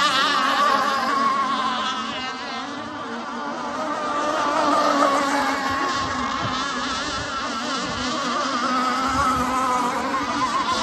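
Radio-controlled racing hydroplane's motor running flat out, a high-pitched buzz that wavers in pitch as the boat runs the course. It fades about a third of the way in and grows louder again around halfway.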